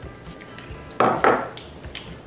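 A small glass cup set down hard on a table top, a sudden knock about a second in.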